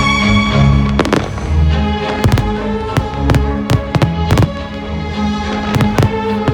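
Aerial fireworks going off in an irregular string of sharp bangs, starting about a second in, several close together, over loud music.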